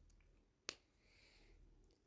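Near silence, broken by a single sharp click a little after half a second in, then a faint brief rustle.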